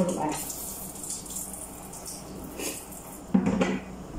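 Kitchenware being handled at a counter: dishes and utensils clattering in separate knocks, the loudest a sharp knock about three and a half seconds in.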